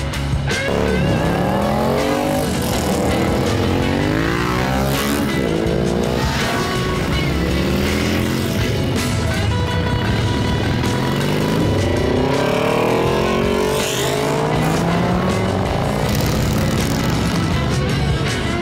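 Several motorcycles accelerating away and passing one after another, their engine notes rising and falling in repeated sweeps every couple of seconds, with rock music underneath.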